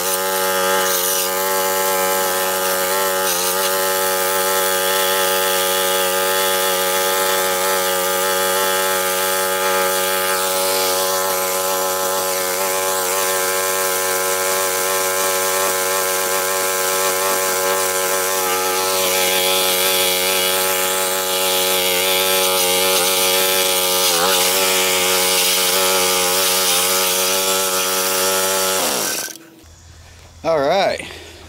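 Craftsman Eager 1 edger/trimmer's Tecumseh 3.8 hp single-cylinder engine running steadily at speed, then shutting off about a second before the end.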